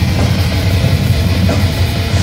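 A brutal death metal band playing live at full volume: distorted electric guitars, bass and drum kit in a dense, unbroken wall of sound.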